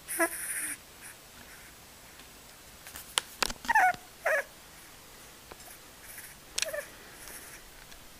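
Sleeping pit bull puppy chirping in its sleep: a few short, high squeaks with wavering pitch, two close together around the middle and a shorter one later.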